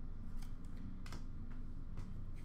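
A few faint, short clicks of trading cards being handled, over a low steady room hum.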